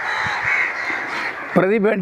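A crow cawing for about a second and a half, then a man's speech resumes.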